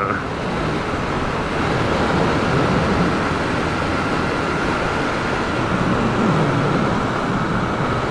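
Yamaha YB125SP's 125 cc single-cylinder four-stroke engine running at a steady road speed, mixed with a steady rush of wind and road noise on the action camera's microphone.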